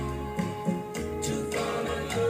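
A 7-inch vinyl single playing on a turntable: a song with singing over bass and drums.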